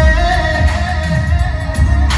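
Male singer performing live through a microphone and PA system, backed by band music with a heavy bass beat; the voice holds long notes.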